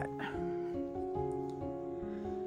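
Background music: a soft instrumental track of held notes that change in steps, like gentle chord changes.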